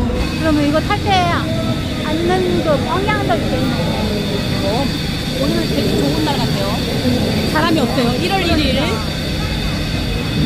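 Voices calling out, with high rising cries about a second in and again near eight seconds, over a steady low mechanical rumble and a faint steady high whine.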